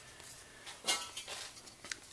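Faint handling of a thin metal ruler against an aluminium differential cover while a cut line is laid out, with a light knock about a second in and a small click near the end.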